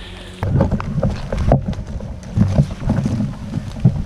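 Rumbling and knocking on a head-mounted action camera's microphone as the wearer moves and gets down low, with clothing and gear brushing and bumping against the camera. It starts suddenly about half a second in and stays uneven, with the sharpest knocks near the middle and just before the end.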